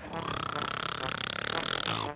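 A dragon character's long rumbling groan that rises and then falls in pitch over about two seconds: the sleeping dragon stirring awake.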